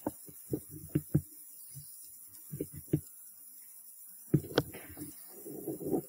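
Scattered soft knocks and scuffs in small irregular clusters, the sharpest two a little past the middle, followed near the end by a soft muffled rustle.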